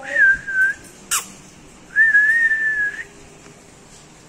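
A person whistling to call a rooster: a short whistle, a sharp click about a second in, then a longer, nearly level whistle of about a second.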